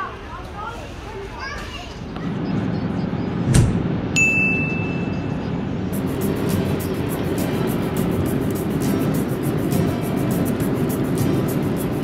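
Steady road noise of a moving car heard inside the cabin. It begins after a couple of seconds of voices, and a single short chime sounds about four seconds in.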